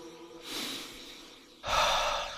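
Heavy breathing from a person straining to hold an acrobatic balance. There are two short, noisy breaths: a softer one about half a second in, and a louder, sharper one near the end.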